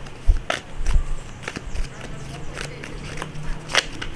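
Tarot cards being handled and shuffled in the hands: about six sharp, irregular clicks of cards striking and flicking against each other.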